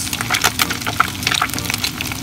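Flour-coated whole sappa (Japanese shad) deep-frying in hot oil: a steady sizzle packed with many sharp crackles and pops.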